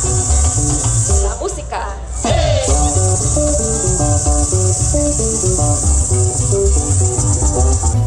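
Live parang band music over loudspeakers: a plucked cuatro and string melody over pulsing bass, with maracas shaking steadily throughout. The music dips briefly about two seconds in, then carries on.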